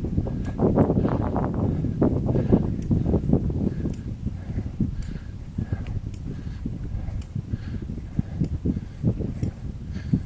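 Bicycle rolling over a rough forest trail: a continuous low rumble broken by many irregular knocks and rattles.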